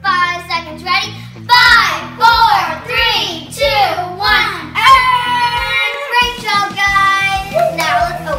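Young girls singing a song together over backing music with a beat.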